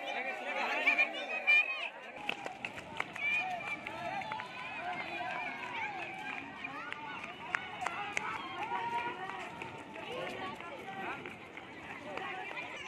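Many people's voices shouting and calling over one another, busiest in the first couple of seconds, with scattered sharp clicks throughout.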